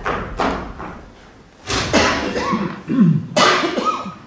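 A person coughing loudly in three bouts, the second and third about a second and a half apart.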